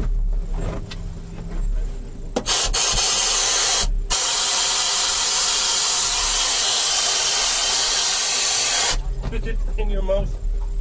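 A loud, steady hiss that starts abruptly, breaks off briefly about four seconds in, then runs on and cuts off sharply near the end.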